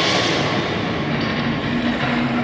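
Soundtrack of an ice projection show played over an arena's sound system: a loud, dense, steady mechanical-sounding noise with no clear tune.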